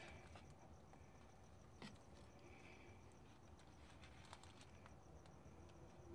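Near silence: room tone, with a faint click about two seconds in.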